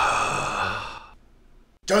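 A man's long, breathy sigh, fading out about a second in. A shouted voice cuts in at the very end.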